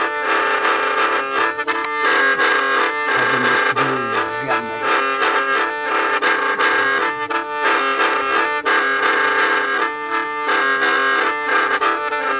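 Đing năm, a gourd mouth organ with bamboo pipes, being played: several reedy notes sound together in a chord-like texture, the tune moving in short phrases broken by brief pauses.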